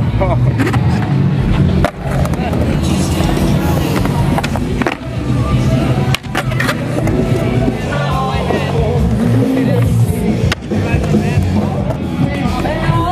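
Skateboard wheels rolling on a concrete bowl and the trucks grinding along the coping, with several sharp clacks of the board, under music.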